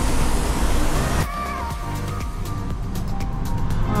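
Steady rushing of a paint booth's ventilation airflow, cut off suddenly about a second in and replaced by background music.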